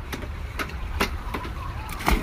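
Low wind rumble on a phone microphone with a few short knocks, as a person goes off the edge into a swimming pool near the end.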